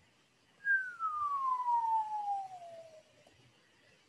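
A single whistle, one pure tone gliding smoothly down in pitch over about two and a half seconds and fading at the bottom.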